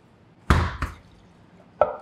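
Two short sharp sounds about a third of a second apart, the first the louder, from a glass bottle being handled over a steel mixing bowl.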